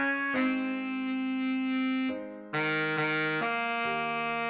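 Baritone saxophone melody played back slowly, in long, steady held notes that change pitch every second or so.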